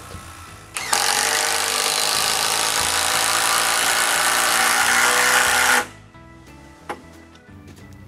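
Cordless drill driving a screw into a wooden beam, its motor running steadily for about five seconds and then stopping suddenly.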